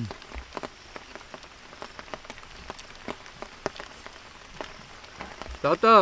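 Scattered sharp clicks and wet smacks of people chewing and eating fried goat brain by hand, several a second over a low background hiss, with a voice starting near the end.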